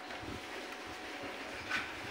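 Faint handling noise of a small metal coffee pot being moved about in a bucket of water, with low soft knocks and one brief sharper sound near the end.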